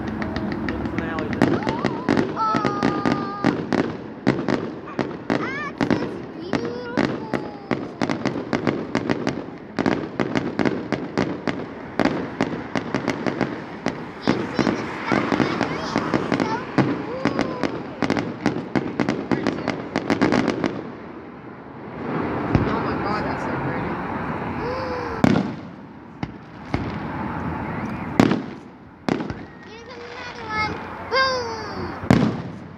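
Fireworks display: a rapid, dense barrage of bangs for about twenty seconds, then a lull broken by a few single loud bangs near the end.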